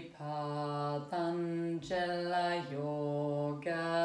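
A woman chanting a mantra in long held notes, about one per second, stepping between a few steady pitches with brief breaks for breath.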